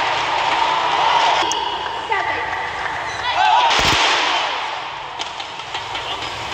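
Badminton doubles rally: rackets striking the shuttlecock with sharp cracks and shoes squeaking on the court mat, over steady arena crowd noise. A loud thump comes nearly four seconds in.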